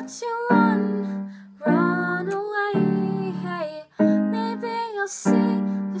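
A girl singing a slow original song over chords struck about once a second, her voice holding and bending notes between the lines.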